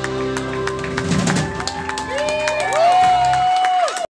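A rock band's final chord rings out and fades in the first second or so. Then a club audience claps and cheers, with sliding, wavering tones over the applause that grow louder near the end.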